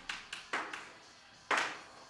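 A few sharp taps, spaced irregularly, the loudest about one and a half seconds in.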